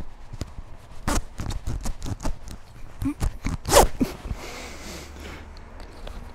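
Life jacket being fastened: its plastic buckles clicking and its straps rustling as they are pulled tight, a run of sharp clicks during the first four and a half seconds or so.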